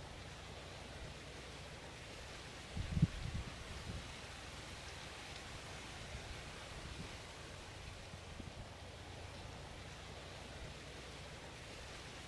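Outdoor breeze ambience: a steady soft hiss, with a brief low rumble of wind buffeting the microphone about three seconds in.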